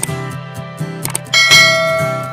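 Background music with a short click near the start, then a bright bell-like ding about 1.4 s in that rings out slowly: the sound effects of a subscribe-button animation, the mouse click and the notification-bell ring.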